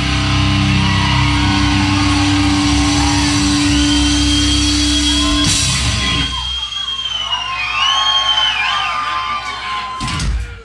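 Heavy metal band ending a song live: a held, ringing distorted guitar chord over drums and bass, cut off by a final hit about five and a half seconds in. The crowd then cheers, yells and whoops.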